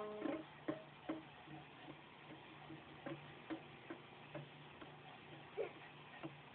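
An acoustic guitar chord rings and dies away at the start. After it come faint, irregular ticks or clicks, about two or three a second, over a low steady hum.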